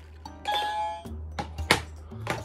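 A short electronic ding-dong chime about half a second in, over background music, followed by a couple of sharp clicks.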